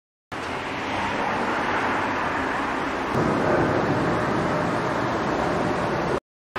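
Steady road traffic noise from cars on the street, swelling a little about halfway through.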